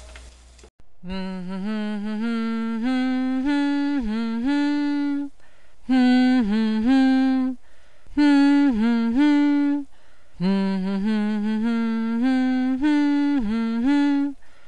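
A voice humming a melody without words, in four phrases of held notes that step up and down, with short gaps between them.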